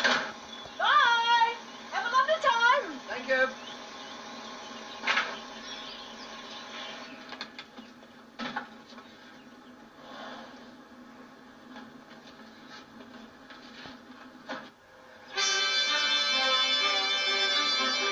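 Film soundtrack: voices calling briefly in the first few seconds, then a quieter steady background broken by three sharp knocks, and music with held reed-like chords coming in loudly near the end.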